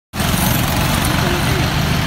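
Roadside traffic noise, with a steady low engine rumble from a bus standing close by and cars passing.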